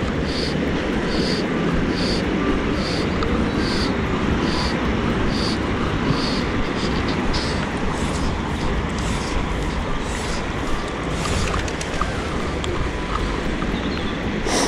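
Steady rush of flowing river water mixed with wind on the microphone. A faint high chirp repeats about twice a second through the first half.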